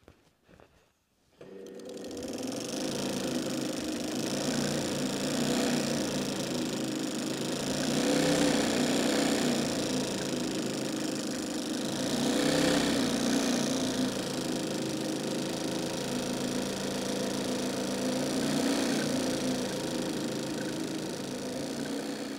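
Straw-hat sewing machine running steadily as a straw plait is stitched into a hat crown, starting about a second and a half in and swelling louder and softer a few times.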